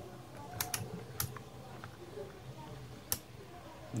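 A few sharp clicks from a Fluke 179 multimeter's rotary selector switch being turned to the diode-test position, three in the first second and a half and a last one about three seconds in.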